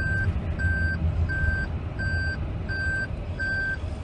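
Electronic beeping, one steady pitch repeated evenly about one and a half times a second, over a low steady rumble.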